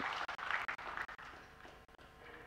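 Scattered audience applause for a pot in a snooker match, dying away within about a second and a half.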